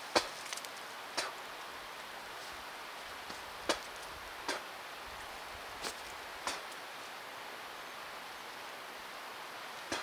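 Several short, sharp crunches of hard fruit seeds being bitten and chewed, spread unevenly over a steady outdoor hiss.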